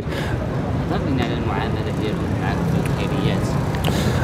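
Steady outdoor street noise with road traffic running, and faint voices in the background.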